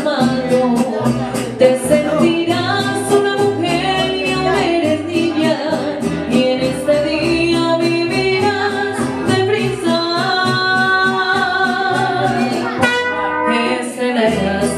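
Mariachi band playing and singing live: strummed guitars keep a steady beat under sustained violin and vocal lines, with a sharp accent near the end.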